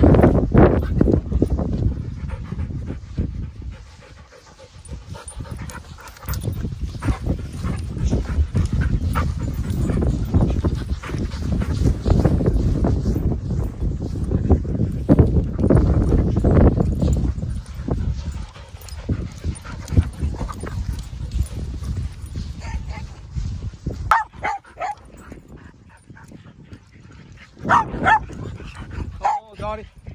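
Several dogs playing rough close to the microphone, with a heavy low rumbling noise through much of it and a few short dog vocalisations; short high calls come near the end.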